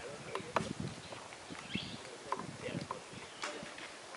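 Low voices of people talking, with scattered short clicks and taps.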